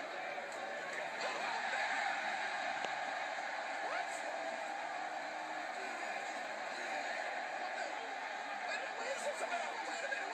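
Arena crowd noise from a wrestling broadcast, a steady din of many voices with no pauses, heard through a TV speaker.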